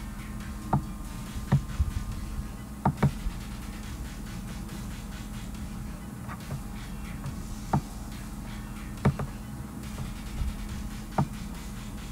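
Sharp, short clicks every second or so, a few in quick pairs, from clicking while drawing on the computer, over a steady low hum.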